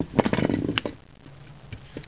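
Plastic Lego robots clattering and scraping together on a wooden floor as they are pushed and rammed by hand: a dense burst of clicks and rattling in the first second, then a few scattered ticks.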